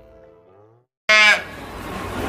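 Soft background music fades out, then about a second in a calf gives a single short, loud, high-pitched bleat that falls in pitch.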